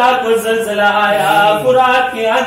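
A man's voice chanting an Urdu elegy (marsiya) for Imam Husain in a slow melody, holding long notes that glide between pitches.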